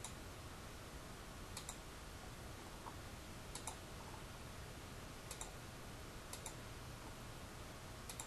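Computer mouse clicking in quick pairs, five times over a few seconds, over a faint steady hiss.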